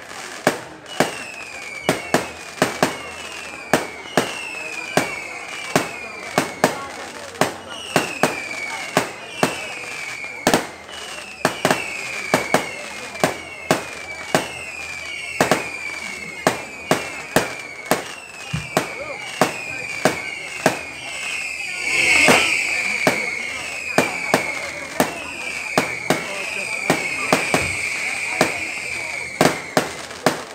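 Aerial fireworks display: a fast, steady string of bangs, about two a second, many of them followed by a short whistle that falls in pitch. The biggest burst comes about three-quarters of the way through.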